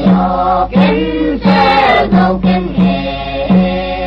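A song: a voice singing a melody over instrumental accompaniment, with a low note pulsing steadily underneath.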